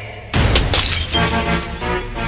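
Glass bottles smashing and shattering about a third of a second in, over background music.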